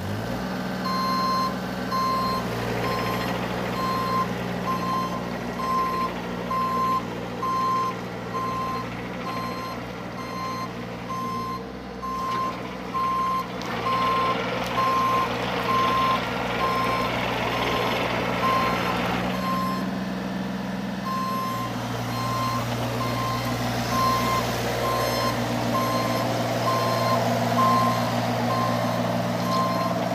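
A Bobcat E32i mini excavator's travel alarm beeping steadily, one high beep about every second, while it tracks across pavement. Underneath runs the steady note of its Kubota diesel engine, with a louder noisy stretch from the machine in the middle.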